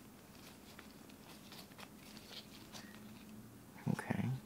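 Wooden snake cube puzzle blocks being turned and fitted by latex-gloved hands: faint scattered clicks of wood on wood, with glove rustling. A brief, louder, low sound comes near the end.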